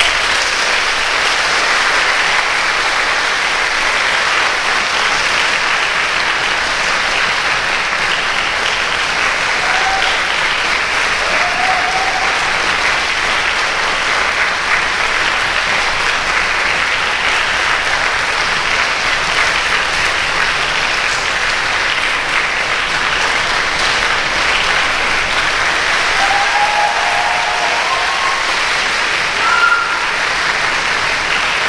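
Concert-hall audience applauding steadily at the end of an orchestral piece, the clapping dense and unbroken, with a few short pitched calls from the crowd rising above it around the middle and near the end.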